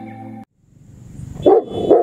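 The tail of a music jingle cuts off, then a Rottweiler barks twice in quick succession, about a second and a half in.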